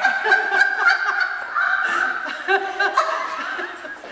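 A woman laughing in repeated chuckles and snickers, fading out near the end.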